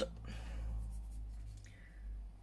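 Soft, scratchy brushing of a makeup brush worked against a pressed eyeshadow pan, fading out after about a second and a half, over a low steady hum.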